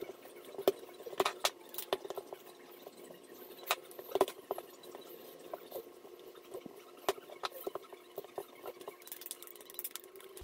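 Hands kneading soft, sticky bread dough on a countertop: irregular soft slaps, taps and sticky pulls, a few louder ones about a second in and around four seconds in. A steady faint hum runs underneath.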